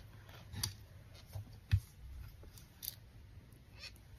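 Quiet handling noises of hand embroidery: light clicks and rustles as the fabric and plastic embroidery hoop are moved, with a soft thump just under two seconds in.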